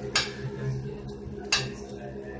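Two sharp clicks about a second and a half apart, from hard tools and a small circuit board being handled on a hard work surface, over a steady low hum.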